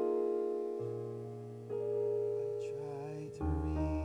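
Slow, soft keyboard introduction to a gospel song: sustained piano-like chords held and changing about every second, with a low bass note coming in about a second in and a fuller, deeper chord near the end.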